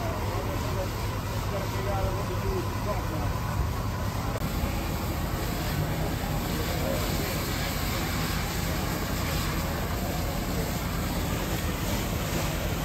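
Steady low rumble of an idling engine under a dense wash of outdoor noise, with indistinct voices in the first few seconds. About four seconds in, the sound shifts to a steadier rushing noise.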